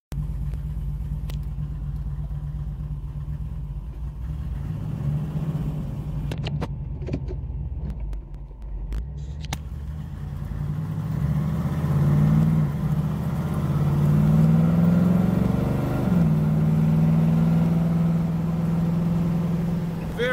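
Small-block 350 V8 of a 1972 Camaro with headers and dual exhaust, heard from inside the car as it drives: a low rumble that grows louder about eleven seconds in as the revs climb twice. The note drops sharply around sixteen seconds in as the Turbo 350 automatic shifts up, then holds steady.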